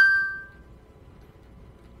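A single bright, bell-like ding that rings out with a few clear tones and fades away within about half a second.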